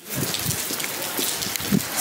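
Steady rain falling on wet paving, an even patter of drops.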